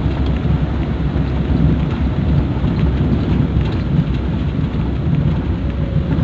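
Suzuki Carry driving slowly along a narrow lane: a steady low rumble of engine and road noise.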